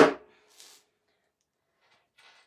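The last of a quick run of hammer taps on a nail in wood, landing right at the start and dying away within a moment. A faint short rustle follows, then near quiet.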